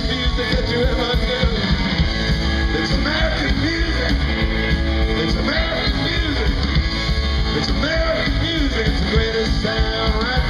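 Live roots rock-and-roll band playing loudly: electric guitars, electric bass and a drum kit.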